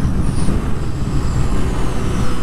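2022 Yamaha YZF-R7's 689 cc parallel-twin engine running steadily at track speed, mixed with wind rush over the rider's helmet camera.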